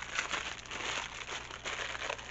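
Plastic wrapping crinkling and crackling irregularly as it is handled.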